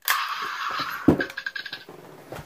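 A white plastic toy gun fired at close range: a harsh buzzing noise that starts abruptly and lasts nearly two seconds, with a knock about a second in.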